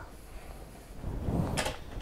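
Plastic radio-controlled toy car being handled and set down on a cutting mat, with low rustling and a short knock about one and a half seconds in.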